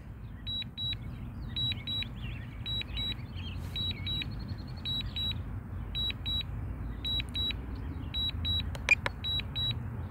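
Drone remote controller beeping during return-to-home: short high beeps repeating steadily, mostly in pairs, over a low steady rumble.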